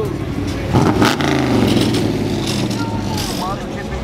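Engine of a lowered classic American sedan running as the car rolls slowly past, with a sharp knock about a second in.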